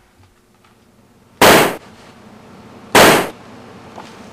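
Two gunshots, the first about a second and a half in and the second about a second and a half later, each a sharp loud bang that dies away within a third of a second.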